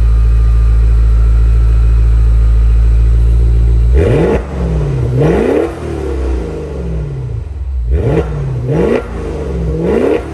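The 2021 Maserati Levante Trofeo's twin-turbo V8 exhaust idles steadily and loud for about four seconds. It is then blipped sharply about five times, each rev climbing fast and falling back.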